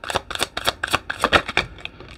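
Tarot cards being shuffled by hand: a quick, irregular run of crisp card clicks, several a second.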